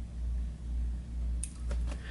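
A low hum that swells and fades about twice a second. About three quarters of the way through, small scissors snip the excess leg fibre with a sharp click, followed by a couple of fainter clicks.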